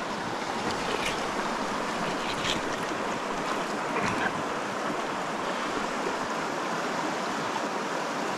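Clear mountain stream flowing steadily, a continuous even rush of water, with a few faint ticks about one, two and a half, and four seconds in.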